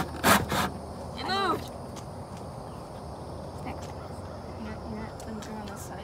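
Hand saw cutting a wooden board in a plastic miter box: a few quick strokes, about three a second, in the first moment, then a short pitched voice-like sound about a second in, after which only faint, scattered saw scrapes are heard.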